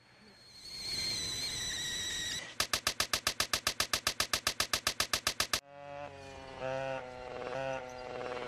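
Edited, looped sound: a high whine swells up over about two seconds, then turns into a buzzing stutter repeating about seven times a second that cuts off suddenly, followed by held pitched tones that change pitch in a few steps.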